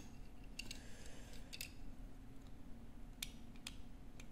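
Light clicks and taps of a small die-cast Majorette Matra Simca Bagheera toy car being turned over in the fingers, a handful of sharp clicks scattered through, over a faint steady hum.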